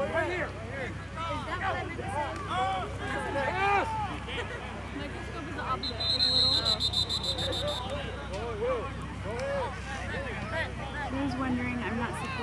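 Voices of players and spectators on the sideline, overlapping and indistinct, with a referee's whistle blown about six seconds in: a high, warbling blast lasting about two seconds.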